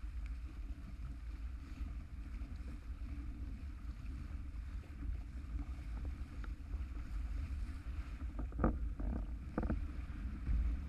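Windsurf board planing over choppy water, with wind rumbling on the microphone and water rushing under the hull. Two brief louder hits come near the end.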